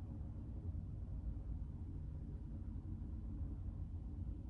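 Quiet room tone: a faint, steady low hum with no distinct sounds.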